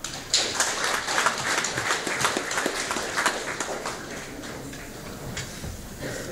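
A group applauding: a burst of clapping that starts about half a second in, is strongest for the next few seconds, then thins out.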